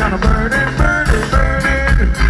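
Live reggae band playing loud: deep bass and drums keeping a steady beat, guitars and a melody line on top.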